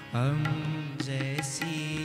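Devotional song: a male voice singing to harmonium accompaniment, with tabla strokes. Just after the start the voice slides up into a long held note over the harmonium's steady tones.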